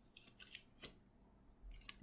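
Near silence broken by a few faint, brief ticks and rustles of a paper craft wing and ribbon being handled as the ribbon is pulled tight and tied.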